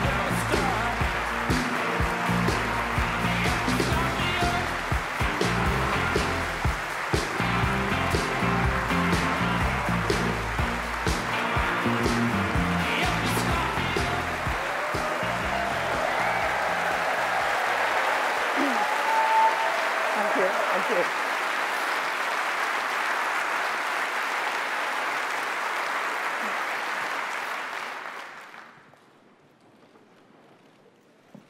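Walk-on music with a beat over an audience applauding and cheering; the music stops a little over halfway through while the applause carries on, then dies away quickly near the end.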